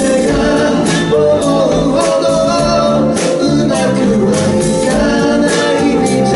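Live pop band playing: a male lead vocal sings over keyboards, electric and acoustic guitars, bass and a drum kit with bright cymbal strokes.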